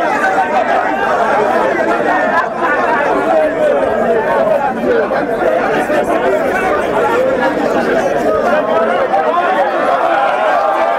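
Several people talking at once, overlapping voices at a steady level with no pause.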